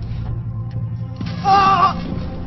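Low, steady background score drone, with a short, wavering cry of "ah" about one and a half seconds in.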